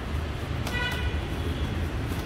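Steady low vehicle rumble with one short, high horn toot a little under a second in.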